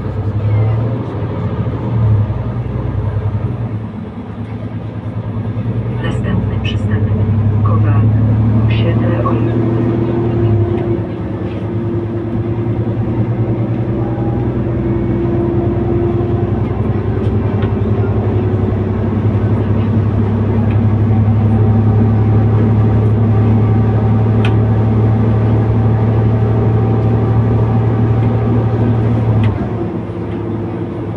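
Cabin drive noise of a Mercedes-Benz Citaro C2 K city bus with a ZF EcoLife automatic gearbox. The engine drone rises as the bus gathers speed, dips briefly about ten seconds in, then holds a loud steady hum with a whining tone above it. It eases off just before the end.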